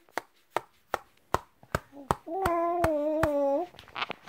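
A hand patting a baby rhythmically, about two and a half soft pats a second. About two seconds in, the baby lets out a long, steady, whiny fussing cry over the patting: sleep fussing as it resists falling asleep.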